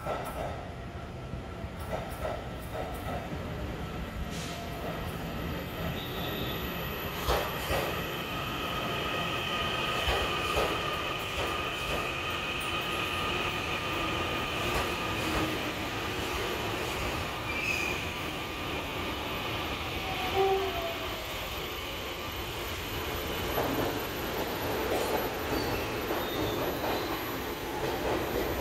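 A TRA EMU900 electric multiple unit pulls into the station and slows to a stop alongside the platform, its running gear rumbling. A steady high-pitched squeal runs through most of the arrival, with scattered clunks from the wheels.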